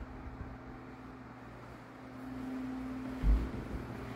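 Room tone with a steady low hum, and a single low thump a little over three seconds in.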